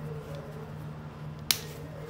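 A single sharp click about one and a half seconds in: a plastic snap button on a reusable cloth diaper being pressed shut.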